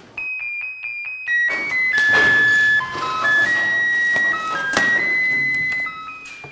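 Background score music on an electronic keyboard: a high note repeated quickly about five times, then a slow melody of long held notes.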